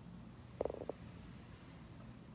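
A man briefly clears his throat, a short rattling sound just over half a second in. A faint low hum runs underneath.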